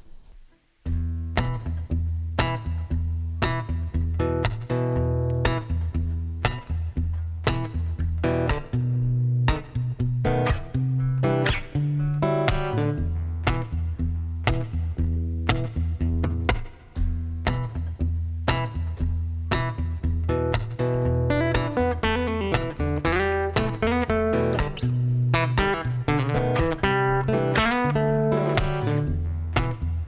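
Looped music from a Boss RC-300 Loopstation looper pedal: plucked acoustic guitar over a repeating low bass pattern, with sharp percussive hits in a steady rhythm. It starts about a second in after a brief hush and carries on without pause.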